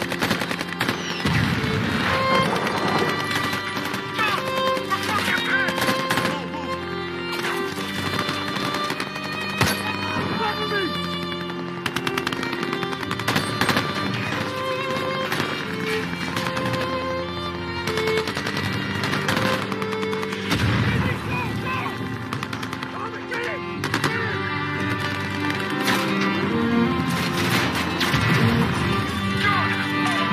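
Repeated automatic gunfire from rifles and machine guns, mixed over a tense film score of held notes.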